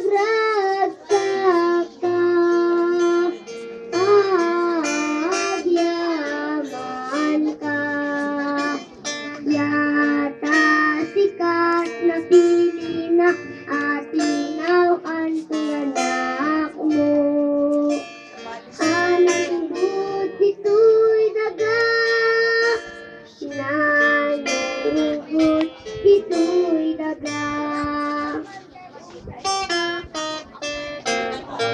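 Children's choir singing a hymn with strummed guitar accompaniment.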